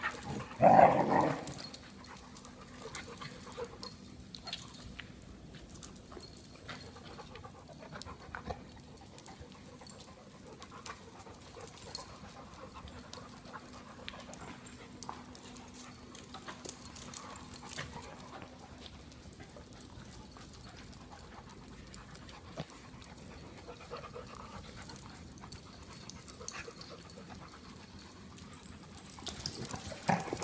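Dogs playing together: one loud bark about a second in, then quieter scuffling with light ticks of claws and paws on a hard floor.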